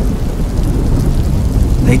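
Steady rain with a low thunder rumble running underneath.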